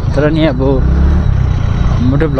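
Motorcycle running under way, a steady low rumble; a voice speaks briefly in the first second.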